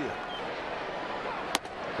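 Ballpark crowd noise, with one sharp crack about one and a half seconds in.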